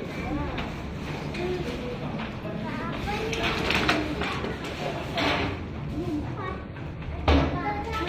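Indistinct voices of adults and children talking, with a sudden knock near the end.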